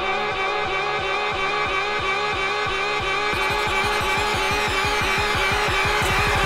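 Drum and bass music from a DJ mix: a repeating low pulse of pitch-falling hits that quickens about three seconds in, with a rising sweep building on top toward the end.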